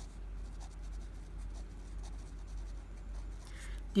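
Pen writing on paper: faint, short scratching strokes of handwriting.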